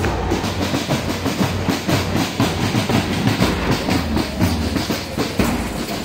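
Marching-band percussion: large bass drums and shaken tambourines beaten in a rhythmic clatter by a big crowd of marchers.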